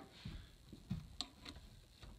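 Ratchet and 12-point socket being fitted onto a spark plug extractor: a few faint metal clicks and light knocks, the sharpest a little past a second in.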